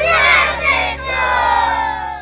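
A group of young children shouting and cheering together, a long cheer whose pitch falls as it trails off near the end.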